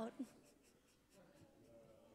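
A voice cuts off at the very start, then near silence: faint room tone.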